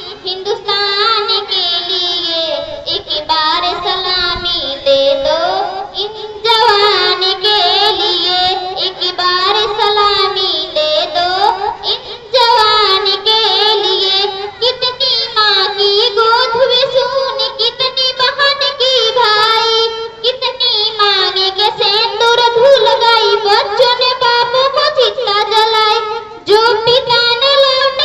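A girl singing a Hindi patriotic song into a handheld microphone, amplified, in long melodic phrases with short pauses for breath every six to eight seconds.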